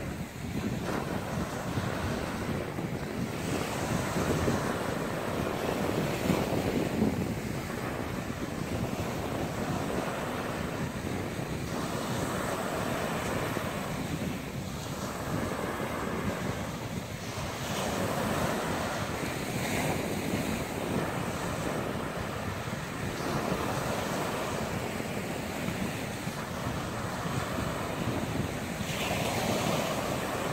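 Surf washing onto a sandy beach, swelling and easing every few seconds, with wind on the microphone.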